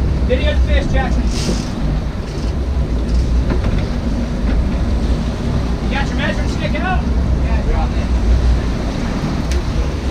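Sportfishing boat's engines running with a steady low rumble, water churning at the stern and wind buffeting the microphone, while the boat backs down on hooked marlin. Brief shouts from the crew come in near the start and about six seconds in.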